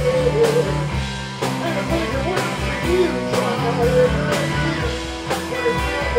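Live rock band playing: electric guitars over a steady drum beat.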